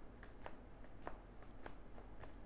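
A deck of tarot cards being shuffled by hand: faint, irregular light clicks of the cards against each other.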